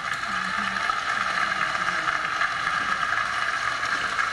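Large crowd applauding steadily, played back over an auditorium's loudspeakers.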